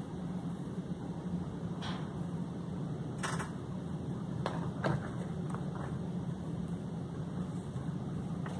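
Steady low hum of room noise, with a few faint clicks and knocks as the phone is handled and turned.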